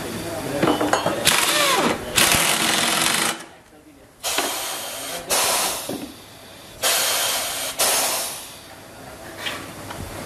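Pneumatic impact wrench hammering a bolt down in a motorcycle front fork tube, in a series of loud bursts of about a second each with short pauses between.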